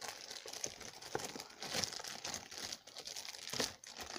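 Clear plastic wrapping on a tablet box crinkling and rustling as hands pull at it, in irregular crackles.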